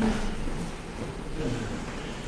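Quiet room tone in a lecture hall: a steady low hum with a faint hiss, no speech.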